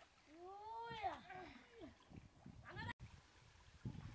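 A drawn-out vocal call that rises and then falls in pitch, followed by a shorter call just before an abrupt cut.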